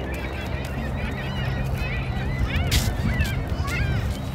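Several birds calling, short overlapping chirping and squealing calls that bend up and down in pitch, over a steady low rumble. There is one brief sharp noise near the middle.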